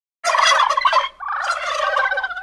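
Wild turkey tom gobbling twice: a loud, rapid rattling gobble, then a second, slightly quieter one.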